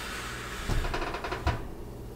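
Oven door being opened to check a baking cake: a rush of noise with a low thump about three quarters of a second in and a sharp click at about a second and a half.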